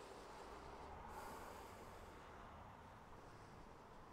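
Near silence: a faint steady background hiss, with one soft breath through the nose about a second in.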